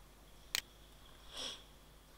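A sharp computer-mouse click about half a second in. A short sniff through the nose follows near the middle, over faint room tone.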